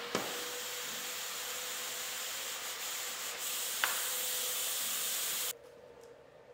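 Shop vac running as the vacuum source under a vacuum table, a steady airy hiss of suction through the MDF top as a sheet is held down, with a light tap about four seconds in; it cuts off suddenly shortly before the end.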